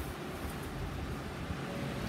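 Steady low outdoor background rumble with a faint even hiss, and no distinct sound events.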